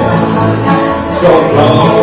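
Bluegrass band playing live on acoustic guitar and upright bass, with a voice coming in singing the next line about a second in.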